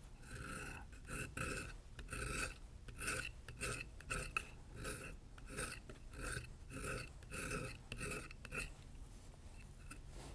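A safety beveler skives the back side of a thin vegetable-tanned leather fin, thinning the leather. It makes short repeated scraping strokes, about two a second, that stop near the end.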